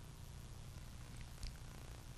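Faint room tone with a steady low hum, and one soft brief sound about one and a half seconds in.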